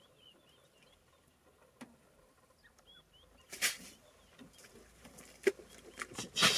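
Quiet open-air ambience with a few faint, short bird chirps, and one brief hissing whoosh about three and a half seconds in.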